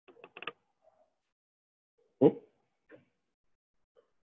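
A pause: a few faint short clicks or knocks in the first half second, then a man's questioning "Hmm?" about two seconds in.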